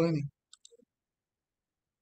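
A man's voice ends a short question, then the line goes dead silent apart from two faint clicks about half a second in.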